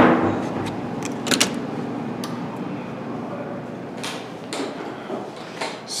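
A hotel room door's keycard lock releasing with a sharp click and a short ringing tail as the card is tapped. This is followed by a few lighter clicks and knocks of the handle, latch and door as it is opened, over steady background noise.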